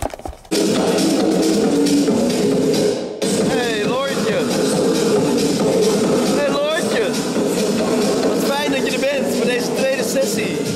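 Loud electronic background music with a steady beat and sliding, pitch-bending vocals, starting about half a second in, with a brief dip around three seconds.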